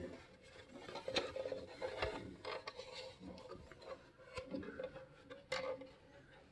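Hard plastic hull of a 1:32 scale model tugboat being handled and turned over in the hands: faint rubbing and scattered light taps and clicks.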